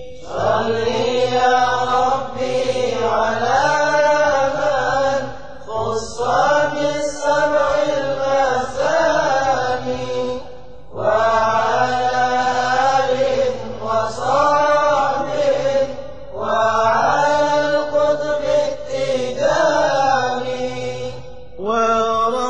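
Arabic devotional chant, a Tijani qasida sung in praise of the Prophet, with long sliding vocal lines. It comes in four phrases of about five seconds each, with a brief breath-pause between them.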